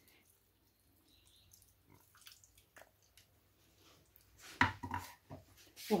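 Quiet kitchen handling: a few faint ticks, then a short run of soft knocks and clatter near the end as the plastic blender jug is put down on the counter after the sauce has been poured.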